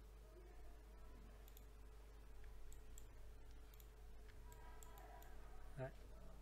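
Near silence with faint, scattered computer mouse clicks, about eight of them, over a steady low hum.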